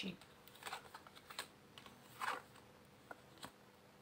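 Tarot cards handled on a wooden table: soft scattered clicks and taps, with a brief sliding swish a little over two seconds in.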